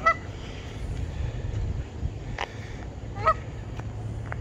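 Canada goose honking: two short, loud honks, one at the very start and another about three seconds in, with a fainter call between them.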